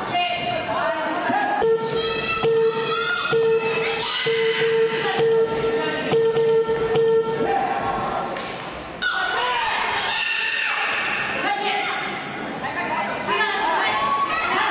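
Voices shouting in a large, echoing sports hall during a wushu sanda bout, with a few sharp thumps of strikes or a takedown. For several seconds near the start a held note is repeated again and again.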